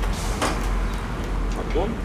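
A short scraping rustle a fraction of a second in as the plastic lid of a steel box trailer is handled on its gas struts, over a steady low rumble.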